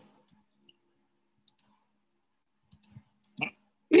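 Computer mouse clicks, coming in quick pairs, as a Zoom screen share is being set up.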